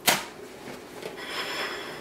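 A sharp knock, then from about a second in a soft scraping as a plate is slid across a tabletop.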